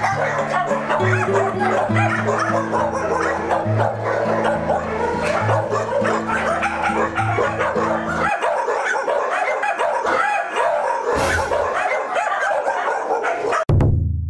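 A crowd of puppies barking and yipping continuously in a kennel, over background music with a steady bass line that stops about eight seconds in. A short low hit comes near the end.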